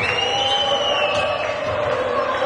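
Basketball arena crowd noise: a steady din of spectators over sustained lower tones, with a long whistled note that rises and then slowly falls in pitch during the first second or so.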